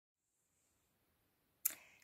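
Near silence with faint room noise, broken near the end by one sharp click that dies away quickly.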